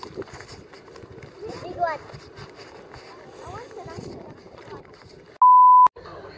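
A loud electronic beep at a single steady pitch, about half a second long near the end, with all other sound cut out beneath it, like an edited-in censor bleep. Before it, voices and outdoor background noise.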